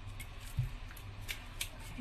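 A kitchen knife scraping the scales off a fresh bakoko (sea bream), in a few short rasping strokes against the scales. There is one low thump about half a second in.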